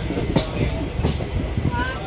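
Passenger train coaches running on the rails, heard from an open coach door: a steady rumble of wheels on track with two sharp clicks as the wheels cross rail joints or points.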